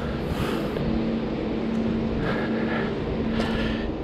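Steady hum of a motor vehicle running close by, one low tone holding level over street noise.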